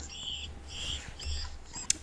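Short high-pitched squeaks, about four in two seconds, over a low steady hum, with a sharp click near the end.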